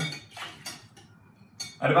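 A few light clinks and knocks of a metal spoon stirring in a glass measuring jug, with a bottle set down on the counter.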